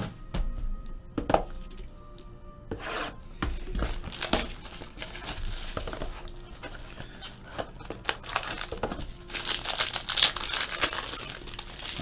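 Plastic shrink-wrap crinkling and tearing in a series of rustling bursts as a sealed trading-card box is opened, loudest in a long stretch near the end. Faint background music plays underneath.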